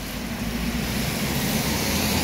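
A car passing close by on a wet road, tyre noise and engine rumble growing a little louder.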